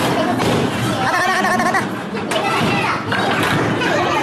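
Bowling alley chatter with a thump of a bowling ball landing on the lane as it is released. One voice calls out more clearly about a second in.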